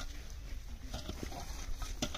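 Hand hoes chopping into dry, weedy earth during digging: a few dull, uneven strikes.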